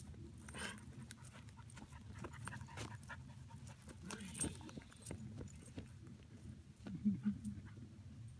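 A dog panting, with scattered short clicks and a brief louder low sound about seven seconds in.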